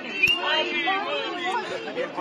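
A small crowd of people talking over one another in a jumble of overlapping voices, with no single clear speaker.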